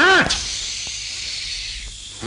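Cartoon sound effects: a short squeal that rises and falls, then a long hiss that fades out after about a second and a half.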